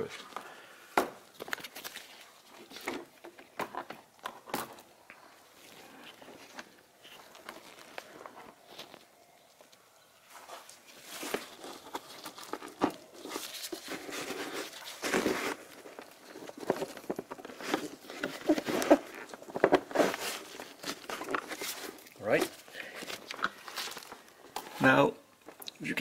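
Scattered clicks, knocks and rustling from a Ford Focus Mk3 radial engine air filter and its plastic housing being handled, as the filter edge is worked into its groove by hand.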